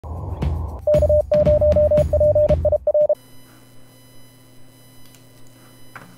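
Intro music with a steady mid-pitched beeping tone keyed on and off in a Morse-code-like rhythm, ending abruptly about three seconds in. A faint steady hum follows.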